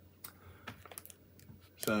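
Light scattered clicks and crinkles of a crispbread packet being handled and turned in the hands. A man's voice comes in near the end.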